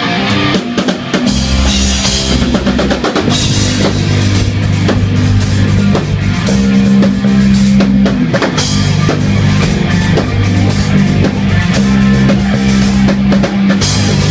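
Hard rock band playing loud: a drum kit with bass drum and cymbals driving over held low guitar notes.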